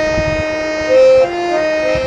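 Harmonium playing the melody of an old Hindi film song: reedy, sustained notes stepping from one to the next, with a lower note held beneath them and a louder note swelling about a second in.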